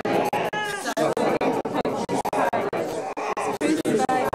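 A congregation speaking aloud together from their service books, many overlapping voices in a large room, the sound broken by frequent brief dropouts.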